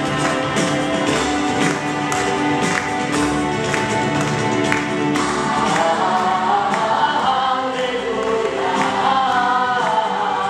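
Music from a stage musical: sustained accompaniment with a steady beat, and a choir of voices singing that grows stronger from about halfway through.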